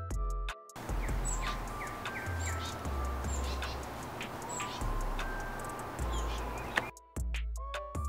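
Light background music. From about a second in until near the end, it gives way to outdoor sound: small wild birds chirping over a steady hiss of ambient noise, with the music's low notes still going underneath.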